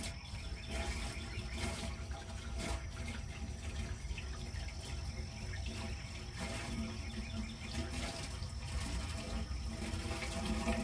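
Water poured from a bucket into the top of a vertical PVC pipe, running and splashing down inside it as a gravity-fed poultry-nipple waterer is filled for a leak test.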